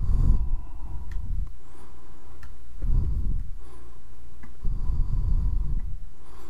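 Breath on a close microphone: three low, rumbling puffs, with a few faint clicks of a computer mouse between them.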